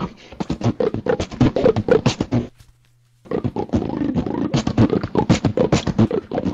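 Beatboxing: a fast run of percussive mouth sounds (kicks, clicks and snares) that stops for about half a second near the middle, then starts again.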